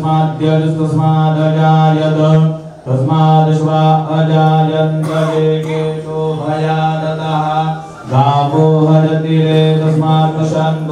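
Male voice chanting mantras in long phrases held on one steady low pitch, with short breath pauses about three seconds in and about eight seconds in.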